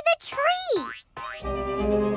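Cartoon boing sound effects, short wavering springy tones for a bouncing puzzle piece. Background music with a steady low pulse comes in about a second and a half in.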